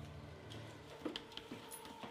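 Faint footsteps, a few light taps and scuffs in the second half, over the fading tail of background music.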